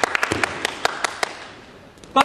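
Scattered hand clapping from a small audience, quick irregular claps that thin out and fade away toward the end.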